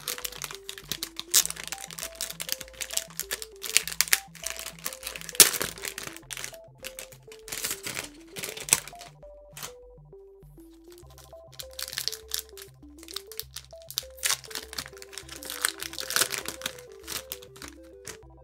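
Foil Pokémon booster-pack wrapper crinkling in irregular bursts as it is handled and opened, with a sharp crackle about five seconds in and a lull around the middle. Steady background music plays underneath.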